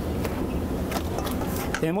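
Steady low hum of kitchen background machinery, with a few faint ticks from a silicone spatula stirring melted chocolate in a stainless-steel bowl. A man's voice comes in at the very end.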